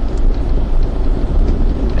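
Steady road and engine noise inside the cabin of a moving vehicle, a low rumble with a hiss over it.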